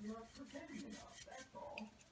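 A woman's voice murmuring faintly, under her breath, with soft handling and brushing noises as a chip brush is worked in a bowl of image transfer cream.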